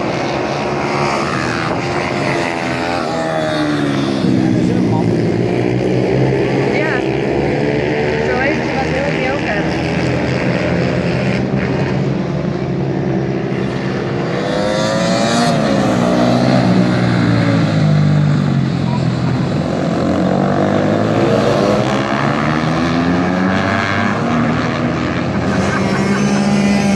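Several small race motorcycles, one of them a Moriwaki MD250, lapping the circuit: their engines rev up and drop back again and again as they accelerate, shift and brake through the corners, several at once and overlapping.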